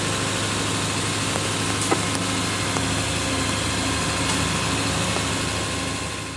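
A truck engine idling steadily: a constant low hum under a continuous hiss, with a couple of faint ticks.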